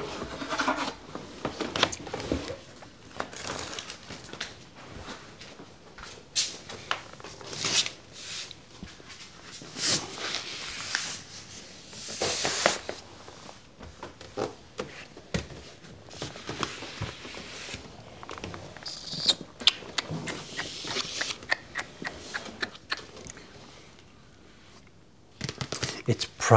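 Parcel handling: scattered rustles, scrapes and knocks as a cardboard box and a padded mailing envelope are moved about and set down on a desk, quieter near the end.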